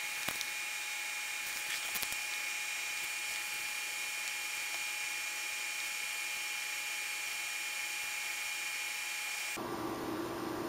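Steady electronic hiss with a thin, high steady whine, the background noise of the recording, with a few faint clicks near the start. The hiss changes character abruptly near the end.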